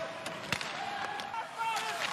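Ice hockey arena sound: a single sharp crack of a stick striking the puck about half a second in, over background arena noise with faint voices.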